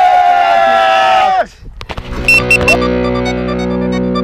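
A long, drawn-out shout of "Yeah!" that ends about a second and a half in, followed after a short gap by background music with steady held notes, starting about two seconds in.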